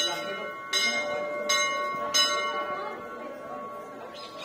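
A temple bell struck four times, about one strike every three-quarters of a second, its ringing tones hanging on and fading away after the last strike.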